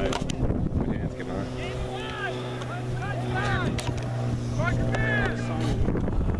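A steady low engine hum sets in about a second in and stops just before the end. Distant shouting voices carry over it.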